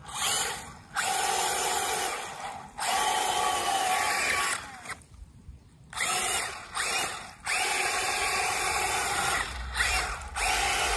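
Electric drive motors and gearbox of a Spin Master All-Terrain Batmobile RC truck whining in several short bursts of throttle. Some bursts spin up with a rising pitch, and each cuts off sharply. The wheels churn the water as it drives.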